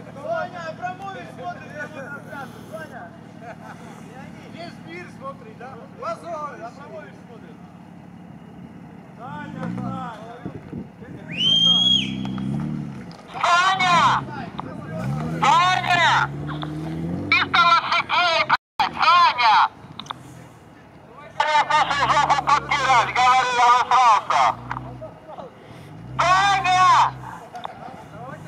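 Jeep Wrangler Rubicon's 2.0-litre turbo engine running low at first, then revving up and down in surges as it climbs an icy hill. Loud shouts come in several bursts over the engine in the second half.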